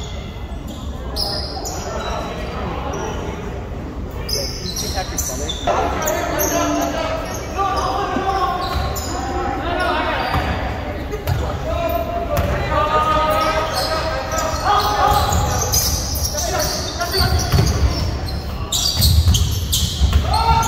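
Basketball dribbled on a hardwood gym floor, with the voices of players and spectators echoing in the large gymnasium.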